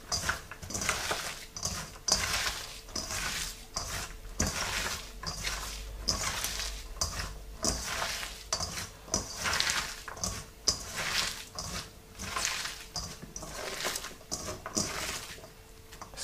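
Hands tossing and squeezing chopped onion, chilli and coriander with salt in a stainless steel bowl: repeated wet rustling, crunching strokes at an uneven pace, with the odd sharper tap against the bowl.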